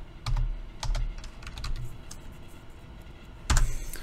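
Typing on a computer keyboard: a few scattered keystrokes, then a louder key press about three and a half seconds in.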